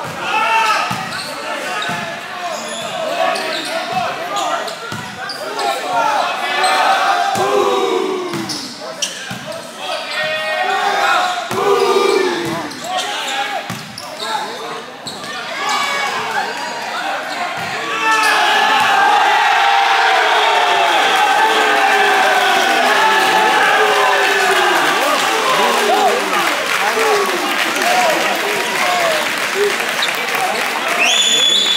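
Indoor volleyball rally: sharp ball hits and players' shouts echoing in a large gym. About eighteen seconds in, a crowd breaks into sustained cheering and applause, which holds to the end.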